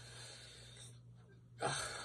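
Faint room tone with a steady low electrical hum during a pause in a man's talk, then, about a second and a half in, an audible breathy intake as he starts to speak again.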